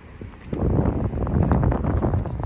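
Wind buffeting a handheld phone's microphone outdoors: a loud, rough rumble that swells about half a second in.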